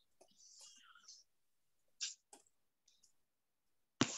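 Near silence on a video-call lesson, with faint whispering in the first second and a few soft keyboard clicks as an answer is typed.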